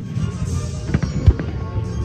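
Aerial firework shells bursting: a sharp bang at the start, then a cluster of booms about a second in, with the loudest near the middle. Music plays underneath.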